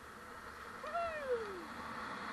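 A person whoops "woohoo!" once about a second in, the pitch jumping up and then sliding down, over a steady hiss of sliding down a snowy slope.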